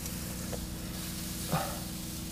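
Bacon-wrapped meat and butter sizzling on a hot grill rack: a steady, even hiss, with a low hum underneath and a light tap about one and a half seconds in.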